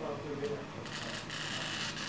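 Hand-held glass cutter scoring a piece of glass: a steady, high scratchy hiss that starts about a second in, made as soon as light pressure is put on the cutter's wheel.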